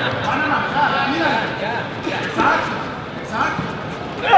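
Background voices in a large hall: spectators and coaches talking and calling out around a sparring match, with a couple of short shouts about two and a half and three and a half seconds in.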